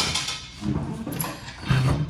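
A person's quiet, low murmur in two short stretches, with a short sharp click about a second in.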